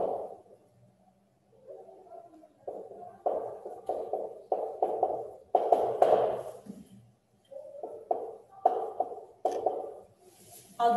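Dry-erase marker squeaking on a whiteboard as words are written, in a quick series of short strokes, with a pause about a second in and another about seven seconds in.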